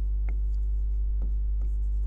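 Chalk writing on a chalkboard: a few short, faint strokes over a steady low electrical hum.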